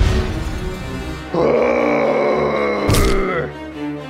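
Background music with sound effects laid over it: a sharp hit right at the start, then a long pitched vocal effect from about a second and a half in, lasting about two seconds, with a second hit about three seconds in.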